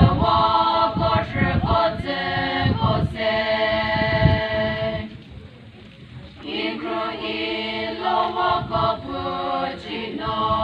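Women's choir singing a Mao Naga folk song, holding long notes, with a short pause between phrases about halfway through before the singing starts again.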